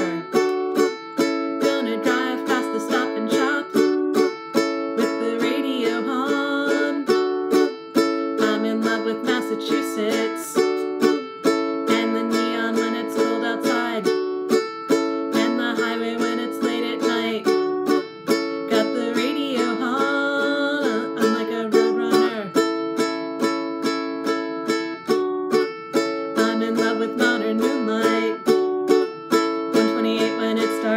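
Ukulele strummed in a steady rhythm, moving between two chords.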